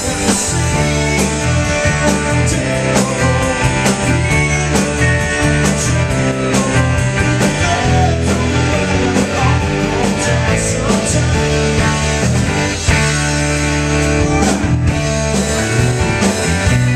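Rock band playing live: two electric guitars, a bass guitar and a drum kit, loud and steady, with regular drum hits.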